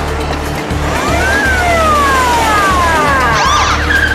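Cars braking hard to a stop with squealing tyres, the screech sliding up and down in pitch and peaking near the end, over dramatic music with a steady low drone.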